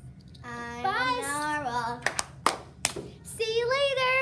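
A girl singing a long, gliding note, then a few sharp hand claps, then another sung note starting near the end.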